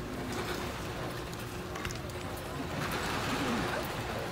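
Indistinct chatter of many people in a large indoor hall, overlapping voices with no single clear speaker, with a few light knocks and a faint steady hum underneath.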